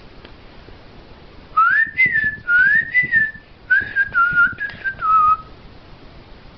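A whistled phrase of about six notes that starts about a second and a half in and lasts some four seconds. The first notes swoop up and over, and the last ones step downward.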